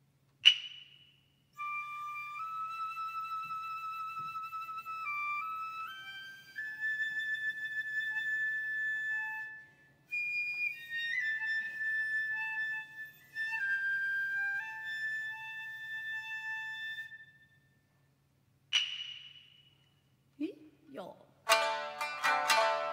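Japanese bamboo transverse flute (fue) playing a slow solo melody of held notes that step up and down in pitch, opening a traditional geisha dance piece. A sharp strike with a ringing tail sounds just before the flute starts and again after it ends, and plucked shamisen notes come in at the very end.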